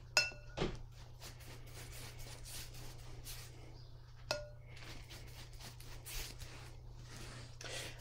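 A wide flat wash brush clinks against a glass water jar twice, once at the start and again about four seconds in, each clink ringing briefly. Between the clinks there is faint swishing as the brush is worked in the water to load it.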